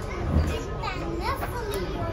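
Several kittens mewing: short high cries that rise and fall in pitch, some overlapping, with a low thump about half a second in.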